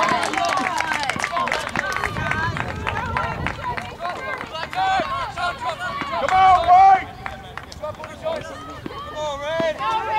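Voices of players and spectators shouting and calling out across an outdoor soccer field, with scattered short knocks.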